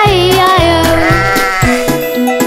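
A sheep's bleat, wavering, over children's-song backing music with a steady bass beat; the bleat fades after about a second and the music carries on.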